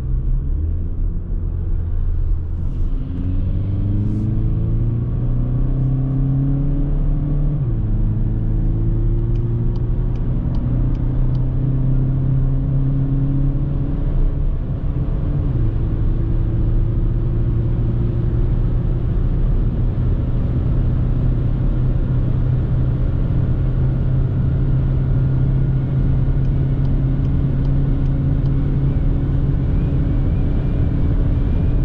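2021 VW Passat 2.0 TDI four-cylinder turbodiesel (122 hp) accelerating hard, heard from inside the cabin over road and tyre noise. The engine note climbs in pitch and drops at two upshifts, about 7 and 15 seconds in, then rises slowly as the car gathers speed.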